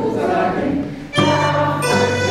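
Children's instrumental ensemble of accordion, cello, zither and xylophone playing, the accordion holding sustained chords. The sound thins briefly about halfway through, then a fuller chord with a deep bass comes in.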